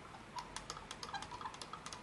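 A stirring rod clinking against the side of a small glass beaker in rapid, irregular taps, several a second, as sodium hydroxide is stirred to dissolve in water.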